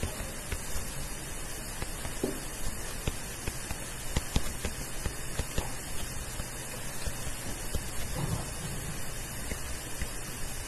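Stylus tapping and scraping on a tablet screen during handwriting: a string of short irregular clicks over a steady hiss.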